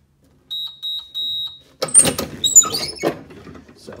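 A K20S Digital Swinger swing-away heat press beeps twice in a steady high tone as its timer runs out, signalling that the press time is done. Then comes a loud clatter of metal knocks and squeaks as the press is worked open by its handle.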